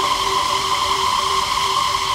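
Electronic dance music breakdown: a steady held synth tone over a hissing noise wash, with a faint pulsing note beneath and no drums.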